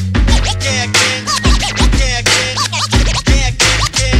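Hip-hop beat with a steady bass line and drums, with turntable scratching over it in quick strokes that bend up and down in pitch.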